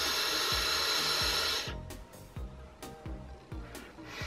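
Long, steady airy hiss of a hard draw through a vape tank with its airflow fully open, a massive, loud airflow. It stops abruptly about a second and a half in.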